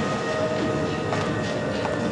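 Dramatic TV background score: a dense, rumbling drone with several steady held notes and short sharp hits about a second in and near the end.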